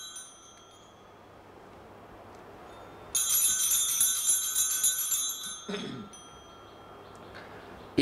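Hand-held altar bells shaken at Mass, ringing for about two and a half seconds from about three seconds in, marking the elevation of the consecrated host. A short soft low thump follows as the ringing stops.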